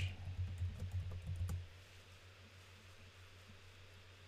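Typing on a computer keyboard: a quick run of key presses for about a second and a half, then they stop and only a faint low steady hum remains.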